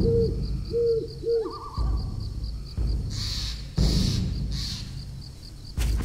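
Night ambience: an owl hooting in short calls, four of them in the first second and a half, over a steady, rapidly pulsing high chirp like a cricket's. Deep low booms of a dramatic score swell in every second or so, with a brief hiss about three seconds in.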